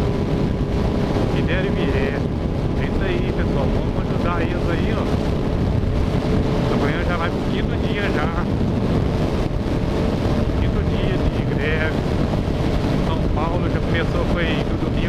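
Wind rushing over the microphone of a motorcycle at highway speed, a steady dense rumble, with the bike's engine humming evenly underneath.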